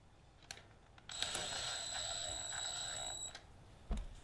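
Cordless impact driver running for about two seconds, loosening a bolt at the gearshift detent lever of a 1985 Honda ATC 125M engine. A faint click comes before it and a short knock near the end.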